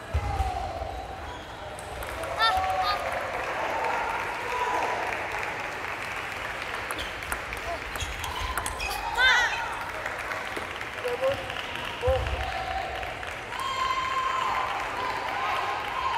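Table tennis rally in a doubles match: the ball clicks off bats and bounces on the table, with a couple of short high squeaks partway through. Voices murmur in the hall throughout.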